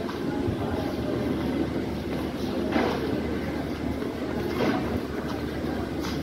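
LHB passenger coaches rolling along a station platform: a steady low rumble of wheels on track, with two sharper knocks, about three seconds in and again near five seconds.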